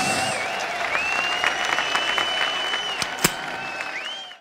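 Large crowd of prison inmates applauding after a punk-rock song, with a long high steady tone over the noise and a sharp crack about three seconds in. The applause dies down towards the end.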